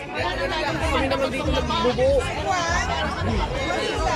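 Several people talking at once around a food stall: overlapping crowd chatter, none of it clear speech, with a low rumble underneath.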